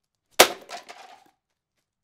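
A sledgehammer blow smashes into a Samsung PS-WJ450 subwoofer's particleboard cabinet about half a second in, followed by a brief clatter of broken pieces.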